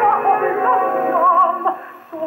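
A 1948 HMV 78 rpm shellac record of an operatic duet playing on an EMG Xb oversize acoustic horn gramophone with a thorn needle. A voice sings a sustained line with wide vibrato, in narrow-band gramophone sound with no treble, and the phrase breaks off shortly before the end.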